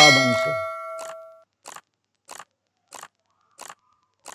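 A bell-like notification ding from a subscribe-button animation: one bright strike of several ringing tones that fades out after about a second and a half. A run of faint clicks follows, about one every two-thirds of a second.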